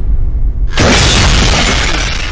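Breaking-glass shatter sound effect crashing in suddenly about two-thirds of a second in, over a low bass rumble.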